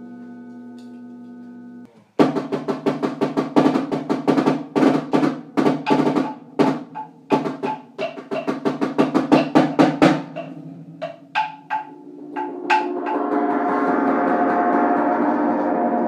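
Concert percussion music. A sustained gong-like ringing tone cuts off about two seconds in and is followed by a run of rapid drum strokes, which thins to a few spaced strikes. Near the end a sustained gong-like tone swells up.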